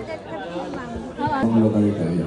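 Several people talking at once, a mix of voices in chatter, louder from about a second in.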